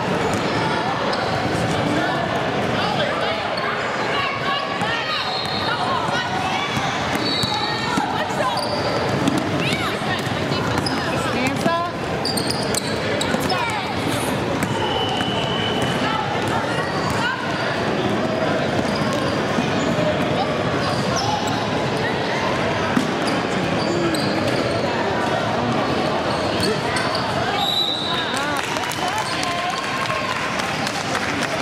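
Basketball being dribbled on a gym's hardwood floor during live play, with the voices of players and spectators going on throughout in a large echoing gymnasium. Short high squeaks come and go over the top.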